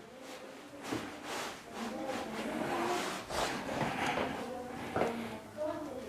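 Faint, indistinct talk in a small room, with scattered light clicks and rustles.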